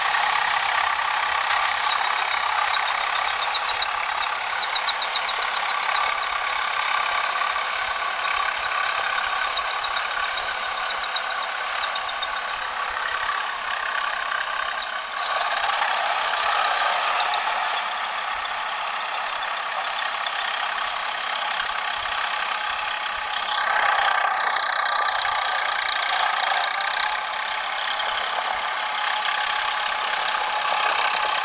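Diesel tractor engine running steadily under load as the tractor puddles a flooded paddy field on cage wheels.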